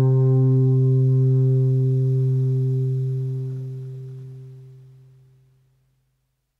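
The song's last guitar chord ringing on after the final strum, holding steady for about two seconds and then fading away to silence over the next few seconds.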